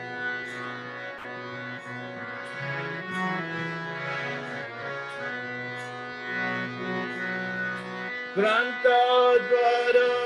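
Harmonium playing a sustained interlude between verses of a Bengali devotional song, its chords shifting from note to note; about eight seconds in, a voice comes in singing the next line over it.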